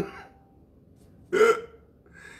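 Short non-word bursts of a person's voice: the tail of a laugh right at the start, then quiet room tone, then one brief voiced sound about a second and a half in.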